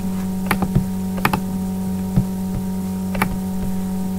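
Steady electrical hum, with about six short, sharp clicks scattered unevenly through it, typical of hands working a computer.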